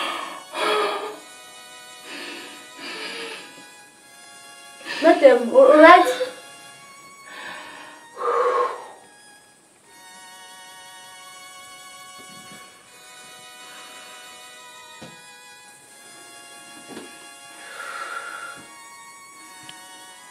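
Spoken dialogue over soft background music of sustained, string-like tones, with the loudest, most wavering voice about five seconds in.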